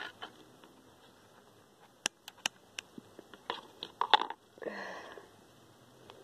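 Hands working an orchid plant, its moss and ties on a wooden stake: a few sharp clicks and snaps about two seconds in, then scattered crackling and a short rustle near the end.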